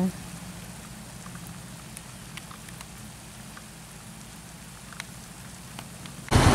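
Faint, steady low hum of a distant diesel truck engine running, with faint scattered crackles over it.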